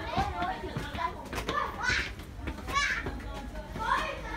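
Children's voices and chatter, with two high, excited calls about two and three seconds in.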